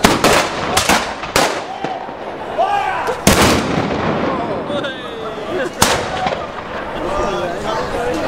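Black-powder muskets firing a ragged series of shots: several in quick succession in the first second and a half, then single shots about three and six seconds in.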